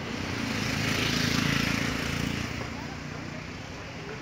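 A motor vehicle driving past, its engine and tyre noise swelling to a peak about a second and a half in, then fading away.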